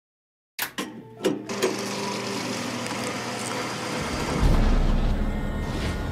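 A few sharp clicks in the first second and a half, fitting a vintage film camera's shutter, then sustained music of steady held tones; a deep low rumble swells in about four and a half seconds in.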